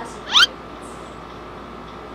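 A single short, high-pitched squeak that glides upward in pitch, about a quarter second in, over steady room noise.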